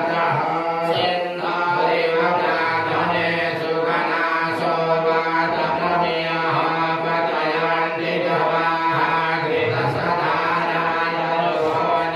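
A priest chanting Sanskrit puja mantras into a microphone, amplified, in one unbroken recitation.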